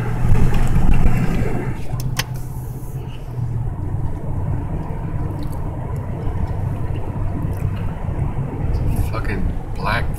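Steady road and engine noise heard inside a moving car's cabin, a low hum throughout, with a few sharp clicks in the first couple of seconds.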